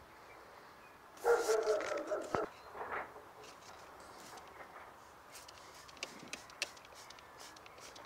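A dog vocalising once for about a second, starting about a second in, followed by a few faint clicks.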